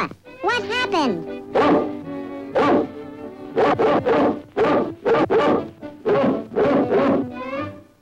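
Cartoon dog barking about ten times in short, loud bursts over orchestral soundtrack music, after a few gliding cries in the first second.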